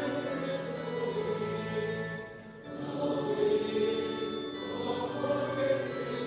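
Many voices singing a slow hymn together in long, held notes, with a short break between phrases about two and a half seconds in.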